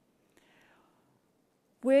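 Near silence in a pause between spoken sentences, with a faint breath about half a second in. A woman's voice starts again near the end.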